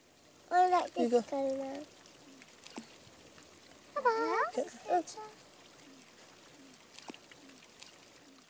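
A child's voice twice, short drawn-out calls, over a faint steady trickle of water.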